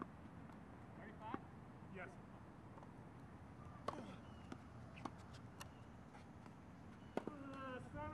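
Tennis balls being struck with rackets and bouncing on a hard court during a rally: a string of sharp pops spaced about a second or more apart, the loudest about four and seven seconds in, over faint steady hiss.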